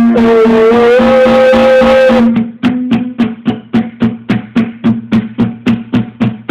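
Guitar music: a held melody note for about two seconds, then short, chopped rhythmic strumming at about three to four strokes a second.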